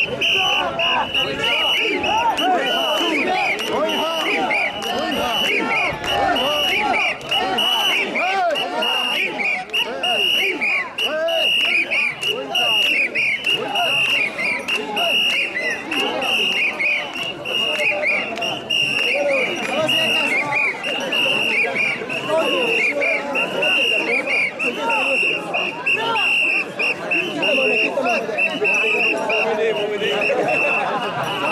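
A crowd of mikoshi bearers chanting and shouting together as they carry a heavy portable shrine, with a shrill whistle sounding over them in rapid repeated blasts.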